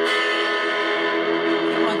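Electric guitar played through a tiny homemade all-valve battery amplifier combo (DL96 output valve, 90 V battery supply) turned up full, a strummed chord ringing on steadily. The player suspects the guitar might be out of tune.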